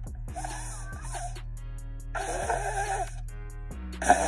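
A small shofar blown by a beginner in two short attempts, each a wavering, unsteady horn tone that doesn't settle into a clean blast.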